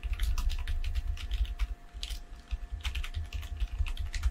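Typing on a computer keyboard: a fast, irregular run of keystrokes.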